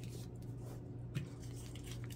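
Faint handling sounds of a folded paper index card and a plastic tape dispenser: a light rustle and a small tap about a second in, over a steady low hum.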